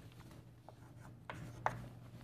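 Chalk writing on a chalkboard: faint scratching with a few light taps of the chalk against the board.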